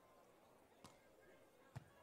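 Near silence: faint open-air court ambience. Two faint short taps come through, one a little under a second in and a slightly louder one near the end, from hands playing a beach volleyball.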